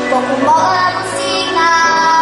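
A six-year-old girl singing a pop song into a microphone, her voice amplified over musical accompaniment.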